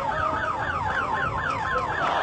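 Electronic vehicle siren in a fast yelp, its pitch sweeping up and down about six times a second, starting suddenly at the outset.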